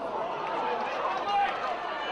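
Several indistinct voices talking and calling out across a football ground, a little louder just after the middle.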